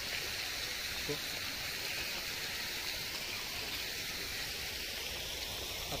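Steady hissing background noise with no distinct events, the kind picked up outdoors by a clip-on microphone; a brief voice sound about a second in.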